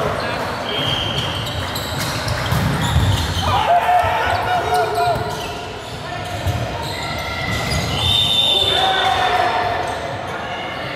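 Volleyball rally in a reverberant sports hall: the ball is struck several times with sharp slaps, shoes squeak on the wooden court, and players call out.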